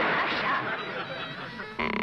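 Cartoon water splash as a toad leaps into the pond: a noisy wash that fades over about a second. Near the end comes a short, steady tone of about a third of a second.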